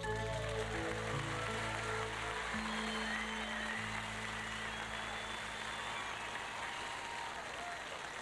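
A band's closing notes, with a resonator slide guitar, are held and ring out while the audience applauds, with some whistling in the crowd.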